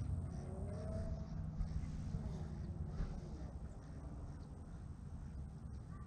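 Outdoor background noise at a pond: a steady low rumble, with a few faint rising and falling calls in the first two seconds.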